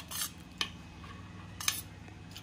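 A steel spoon scraping and clinking against a stainless steel plate and bowl as chopped fruit is pushed off into yogurt. A few sharp clinks come right at the start, another about half a second in and one near the end.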